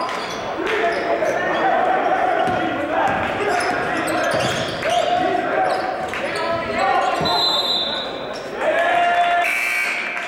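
Basketball game in a large gym: sneakers squeaking on the hardwood court again and again, the ball bouncing, and players and coaches calling out, all echoing in the hall.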